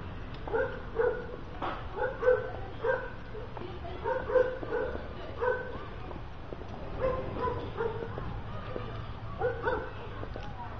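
A dog barking again and again, in quick runs of two or three barks with short pauses between, over a steady low rumble.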